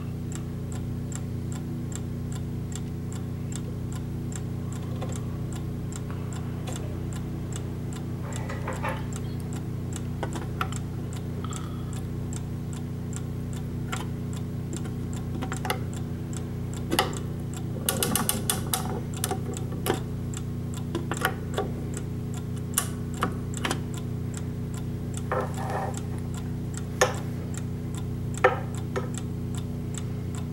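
Mantel clock movement ticking steadily, with a burst of metallic clicking and rattling about halfway through as a winding key is worked in the dial, and two sharp knocks near the end.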